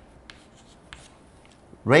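Chalk writing on a chalkboard: a few short, quiet scratches and taps as brackets and letters are drawn. A man's voice starts near the end.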